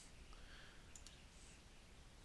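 Near silence: faint room tone, broken by a single light computer-mouse click about a second in.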